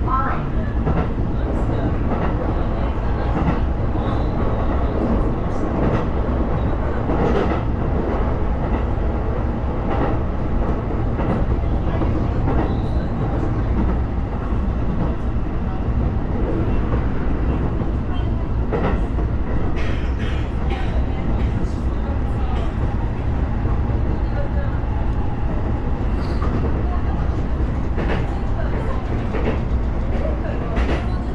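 Sotetsu commuter train running at about 60–70 km/h, heard from inside the passenger car: a steady rumble of wheels on rail with scattered clicks from the track.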